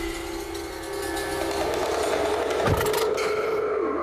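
Sustained, held synthesizer tones of a dramatic background score, shifting to a higher chord about a second and a half in, over steady street traffic noise.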